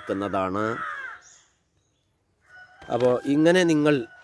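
A man's voice reciting an Arabic phrase in drawn-out, chant-like syllables, then pausing for about a second before starting the next phrase. A faint steady high tone runs under the second phrase.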